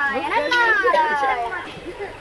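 Children's voices, high-pitched and speaking, with the speech breaking off and on.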